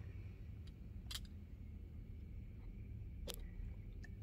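A few sharp clicks, two of them clear, about two seconds apart, over a low steady hum: the camera being handled and repositioned.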